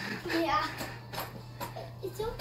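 Faint, brief children's voices in a lull between louder talk, over a steady low hum.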